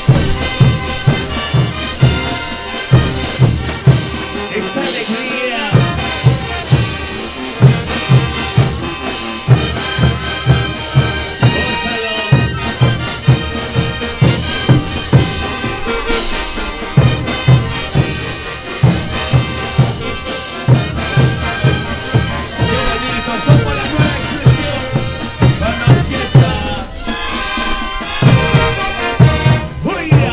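Live Peruvian brass band music, a chutas dance tune played by trumpets, baritone horns and sousaphones over a steady bass drum and cymbal beat. The drum beat drops out briefly about five seconds in, and again a few times later.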